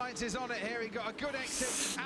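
Quiet speech well below the level of the nearby talk, with a short hiss about one and a half seconds in.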